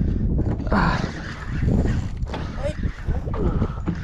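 Wind rumbling on the microphone over sea noise around a small open boat, with a burst of louder hiss about a second in and faint low voice sounds near the end.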